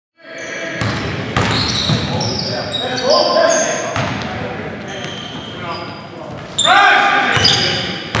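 Basketball game on a hardwood gym floor: the ball bouncing, sneakers squeaking in short high chirps, and players' voices, all echoing in a large gym hall. There is a burst of shouting near the end.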